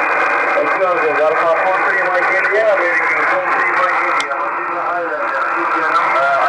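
Amateur radio voice on the 20-metre band played through a shortwave receiver: indistinct single-sideband speech in a narrow, thin band over steady hiss, with a brief click about four seconds in.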